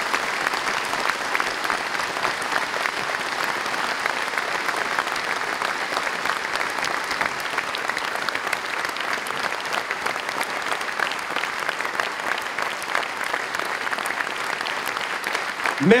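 A large crowd applauding steadily: the dense, even clatter of hundreds of hands clapping.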